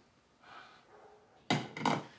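Two quick knocks on a wooden kitchen cutting board, about one and a half seconds in, after a near-quiet start.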